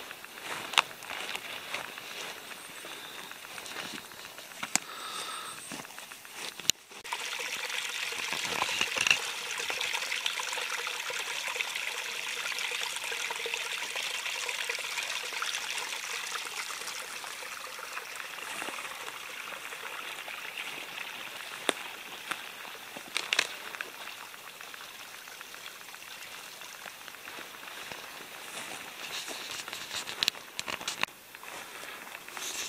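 A small woodland stream trickling and running, coming up strongly about seven seconds in and then slowly fading away. A few brief knocks are heard now and then.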